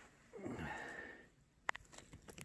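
A close sniff or breath lasting about a second, falling slightly in pitch, followed by a single sharp click near the end.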